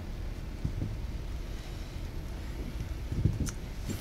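Steady low room hum with soft handling noises as sandals are moved on a tabletop, including a few light knocks and a small click about three seconds in.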